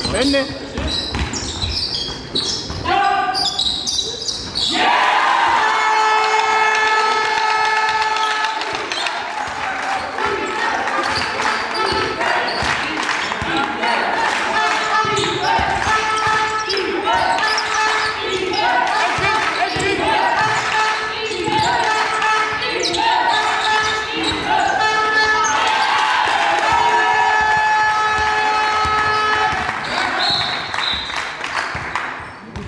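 A basketball is dribbled and bounced on a sports-hall floor during play, with voices shouting in the reverberant hall. Several times a long, steady pitched tone is held for a few seconds over the play.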